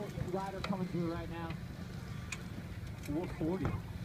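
People's voices calling out in two stretches, one in the first second and a half and one near the end, over a steady low hum.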